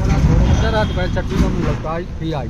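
People talking, over the low rumble of a motor vehicle passing close by on the road.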